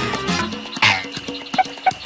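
Cartoon sound effects over lively background music. About a second in comes a loud sound that falls quickly in pitch, then three short high blips near the end.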